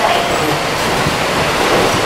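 Steady running noise inside a Seibu Leo Liner 8500-series car, a rubber-tyred guideway-transit train, as it travels along its guideway.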